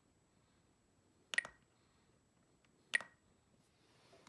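Spektrum DX9 radio transmitter giving two short beeps, about a second and a half apart, as its menu scroll roller is worked.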